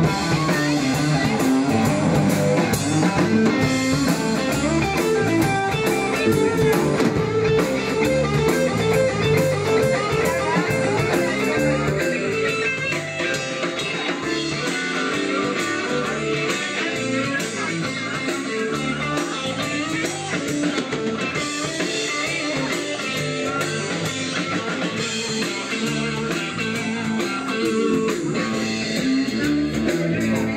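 Live blues-rock band playing an instrumental passage: a Telecaster-style electric guitar through a valve amp over a drum kit, a little quieter after about twelve seconds.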